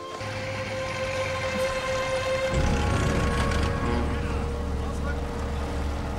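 TV war-drama soundtrack: sustained held music notes, joined about two and a half seconds in by a deep, steady rumble of armoured vehicle engines.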